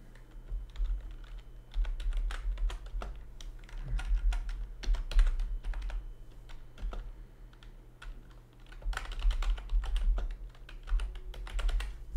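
Typing on a computer keyboard: runs of quick keystrokes with a sparser stretch in the middle, entering a commit message. A steady low hum sits underneath.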